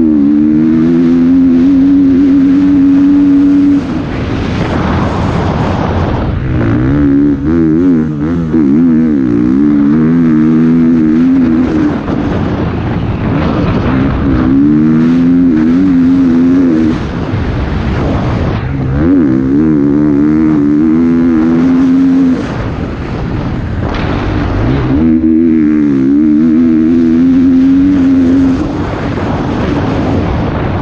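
Motocross bike engine heard from on the bike while it is ridden hard. It holds at high revs with a wavering pitch, and the throttle backs off briefly about every five seconds, five times in all.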